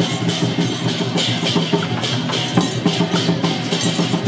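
Temple-procession music led by drums and percussion, keeping a steady, fast beat as it accompanies the giant deity puppets.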